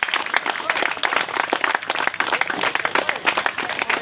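A crowd applauding: many people clapping steadily together.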